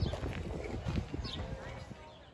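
Footsteps knocking on a wooden boardwalk, with people talking in the background.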